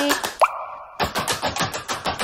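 A fast run of sharp clicking, popping sound effects with a short rising bloop about half a second in, part of an edited music track.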